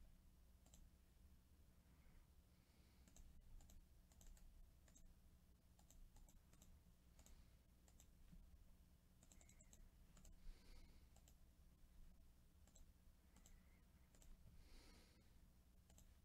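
Near silence with faint, scattered clicks of a computer mouse and keyboard, over a low steady hum.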